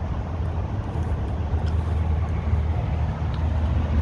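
Steady low outdoor hum and rumble of road traffic and machinery, unchanging throughout, with a couple of faint clicks.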